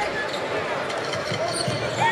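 Live basketball game sound in an arena: a basketball dribbled on the hardwood court over steady crowd noise.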